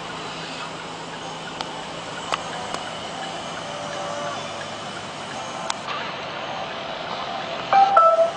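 Steady road and engine noise inside a car's cabin as it creeps along slowly, with a few faint clicks. Just before the end comes a louder electronic chime from the car's parking-assist system.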